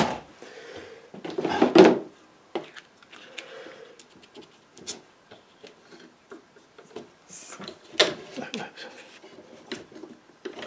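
Handling noise on a painting board: scattered clicks and rubbing as bulldog clips and the paper are adjusted and pulled tight, with a louder rustle about a second and a half in and another cluster of clicks near the end.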